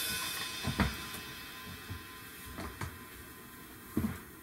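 A few soft knocks and bumps at a drum kit, with a sharper click near the end, as the child moves about on the stool and reaches down toward the hi-hat pedal; no drum is played.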